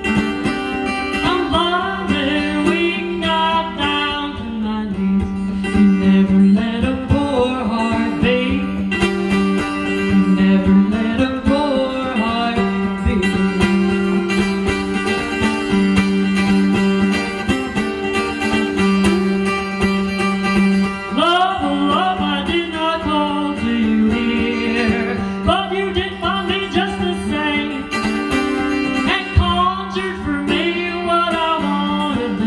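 A woman singing live to her own strummed acoustic guitar, the guitar keeping up a steady accompaniment under the vocal line.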